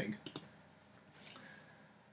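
A few faint, short clicks from a computer pointing device, just after a word ends, as the Save button of a file dialog is clicked; the rest is near quiet.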